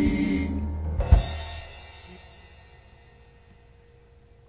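The ending of a soul band recording: the last held chord breaks off, a single final drum-and-cymbal hit comes about a second in, and its ring dies away into a fade-out.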